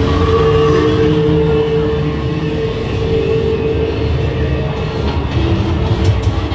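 Haunted-maze soundscape: a loud, rumbling drone like a passing train, with a steady held tone over the first few seconds that then fades.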